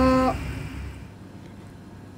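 Kikiam frying in oil in a pan, over a low steady hum that stops about a second in, leaving quieter room sound.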